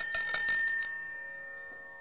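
A small high-pitched bell struck several times in quick succession, then ringing out and fading.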